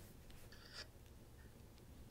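Near silence: room tone, with one faint, brief rustle a little before the middle.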